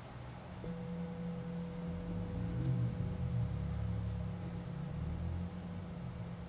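A brass singing bowl is struck once about half a second in and rings on with a steady, sustained tone, marking the start of a short meditation session.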